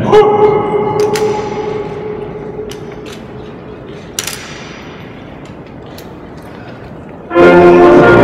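Music ends on a held chord that rings and fades over a few seconds in a large echoing hall. A single sharp knock comes about four seconds in, and loud music starts abruptly near the end.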